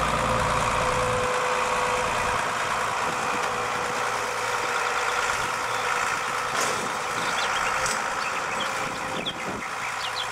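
New Holland tractor running under load, pulling a JF FTC 955 Pro trailed forage harvester that is picking up and chopping grass, with a steady whine from the chopper. The sound slowly fades as the rig moves past.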